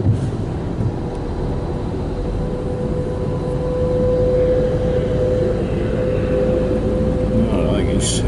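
Car cabin noise while driving slowly on a wet motorway: a steady low rumble of engine and tyres, with a steady whine that swells in the middle and fades near the end.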